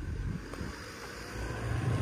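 Low, uneven rumble of wind buffeting a phone's microphone outdoors, with faint background hiss.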